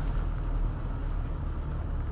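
Inside a roadster's cabin: a steady low engine hum and tyre noise from a wet road as the car drives along.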